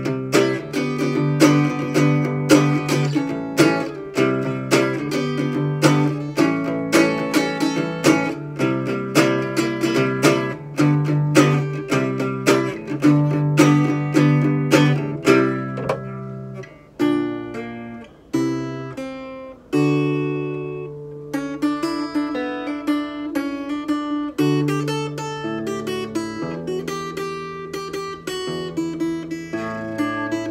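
Ibanez PN1 parlor-size acoustic guitar played solo, strummed chords in a steady rhythm. About halfway through, the playing breaks off briefly and changes to slower picked notes and held chords.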